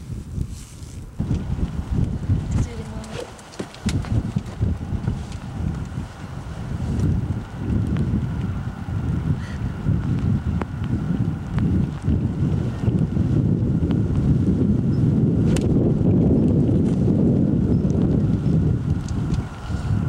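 Wind buffeting the microphone, an uneven low rumble that grows stronger towards the end, with a single sharp click about fifteen seconds in from a golf iron striking the ball.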